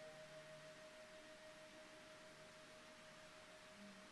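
Near silence: room tone with one faint, steady, unwavering tone held throughout.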